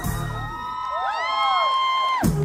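Loud pop-funk music from a stage sound system drops its bass and beat about half a second in, leaving several gliding high tones that rise and hold for about a second and a half, with the audience cheering.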